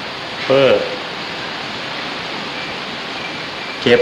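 Steady, even hiss of an old recording's background noise filling a pause in a man's speech, with one short word about half a second in and speech returning near the end.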